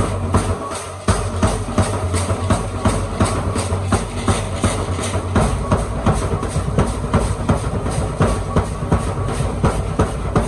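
Traditional danza music: a big drum beating a steady rhythm while the dancers' gourd rattles and wooden bows clack in time with their steps. The beat drops out briefly just before a second in, then carries on.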